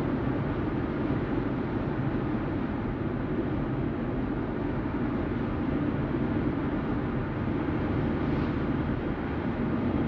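Steady road and engine noise heard inside a car's cabin as it cruises at an even speed. It is a constant low rumble with no changes or distinct events.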